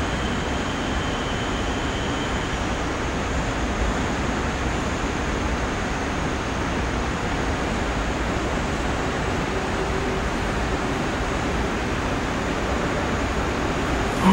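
Steady, even background noise of an underground subway platform with the track empty, with a faint high whine fading out in the first few seconds.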